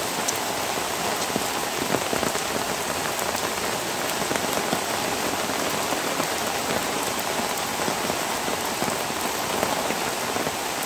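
Steady rain falling, an even hiss with many small, sharp drop hits close by.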